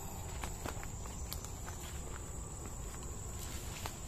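Footsteps crunching through leaf litter and undergrowth, with scattered snaps and clicks of twigs and leaves, over a steady high-pitched insect drone.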